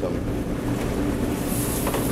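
Steady roar and hum of a commercial gas range and its exhaust hood, with a sharp sizzling hiss from the hot sauté pan about one and a half seconds in.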